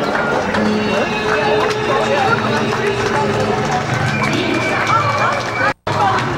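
Street crowd chatter: many voices talking at once, none clearly picked out, with a few held tones beneath them. The sound cuts out abruptly for a split second near the end.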